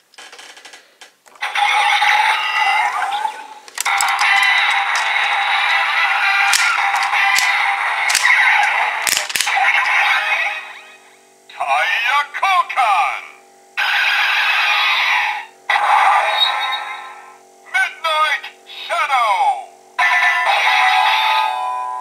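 Kamen Rider Drive DX Drive Driver toy belt, worked with the Shift Midnight Shadow car in the Shift Brace, playing its electronic standby music through its small speaker for about ten seconds. A click comes near the middle, then a run of short recorded voice calls and sound effects for the tire change.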